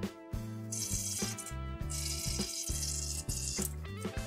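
Background music with a steady beat, over which liquid hisses out of a squeezed, cut-open squishy toy into a plastic bowl, in two spells.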